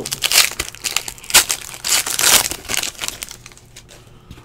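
Foil trading-card pack wrapper crinkling as it is torn open and crumpled by hand, in irregular crackly bursts that thin out toward the end.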